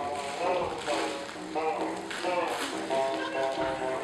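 Performers' voices in short, pitched phrases, some notes held, between singing and chanting, with no clear words.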